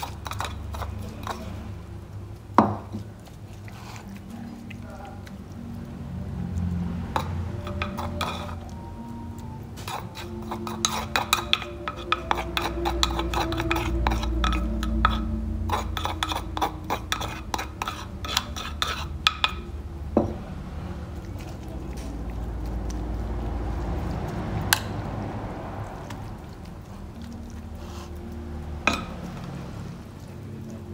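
A utensil scraping and clinking against a mortar as pounded lemongrass-and-chili paste is emptied onto fish in a plastic bowl: a dense run of quick clicks and scrapes in the middle, with a few single sharp knocks before and after.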